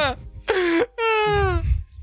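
A person's voice giving a short cry and then a long wail that falls steadily in pitch, a mock-pained reaction right after laughter.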